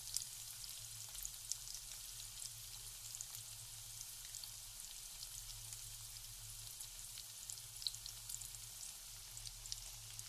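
Sliced red onions frying in hot oil in a metal wok: a steady sizzle with frequent small crackles and pops. A faint low hum runs underneath.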